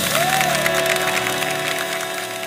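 Orchestra holding the final chord of a pop song medley while a studio audience applauds.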